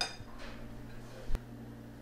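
A metal spoon clinks against a china soup bowl with a brief ring, followed about a second later by a single sharp knock.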